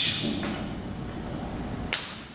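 A called-out voice dies away in a hall's echo, then a single sharp crack sounds near the end.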